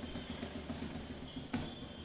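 A drum beaten in slow, single, evenly spaced strokes: one beat at the start and another about a second and a half in.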